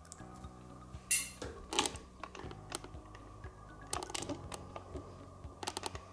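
Scattered light clicks and taps from hands handling the feeding enclosure while a locust is dropped in. The loudest click comes about a second in, with small clusters near four and six seconds, over a faint steady low hum.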